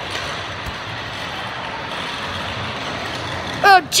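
A steady hiss of background noise, even and unchanging, with no distinct events. Near the end a high-pitched voice says "Oh".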